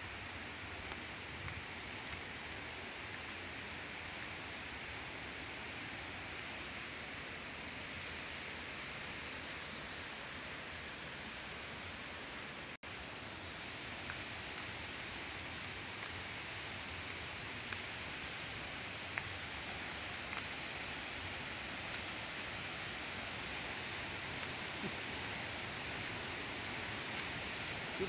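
Steady rushing of a waterfall, growing slightly louder toward the end, with a brief cut-out a little before halfway.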